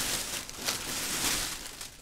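Plastic shopping bag crinkling and rustling as items are handled and pulled out of it, in a few uneven rustles with light handling ticks.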